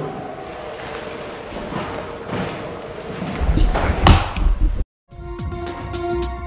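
A loud thump with low knocking around it about four seconds in, then the sound cuts out briefly and outro music with a held droning chord begins.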